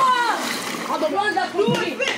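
Water splashing in a swimming pool as someone plunges in. Young voices shout over it, one falling in pitch at the start.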